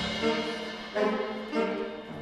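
Big-band jazz ensemble playing a soft passage of held chords, with new chords coming in about a second in and again shortly after.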